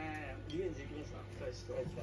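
Quiet voices talking at a table, with a steady low hum behind them.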